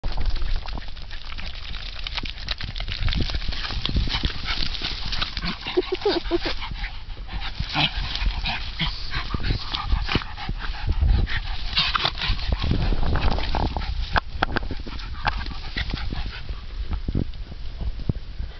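Two small dogs, one a miniature schnauzer, play-wrestling in tall grass: dog vocal noises over the rustle of grass, with a low rumble throughout and many short clicks.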